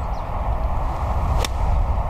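Golf iron striking the ball on a full approach swing: one sharp click about one and a half seconds in, over a steady low rumble.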